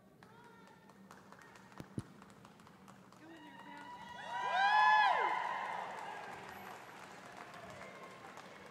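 A loud, drawn-out human call that rises and falls in pitch about four to five seconds in, echoing and fading slowly in the big hall: a handler's voice command to a working cattle dog. A single sharp knock sounds about two seconds in.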